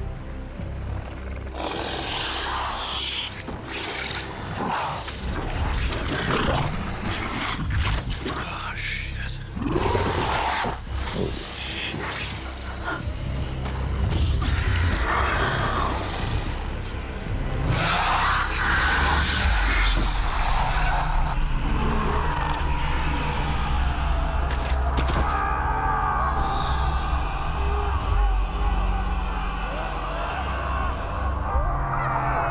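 Film soundtrack of tense music mixed with creature shrieks and monster sound effects, full of rising and falling cries. It gets louder and more sustained about halfway through.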